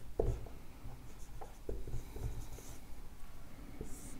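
Marker pen writing on a whiteboard: a run of short, faint strokes as a word is written out.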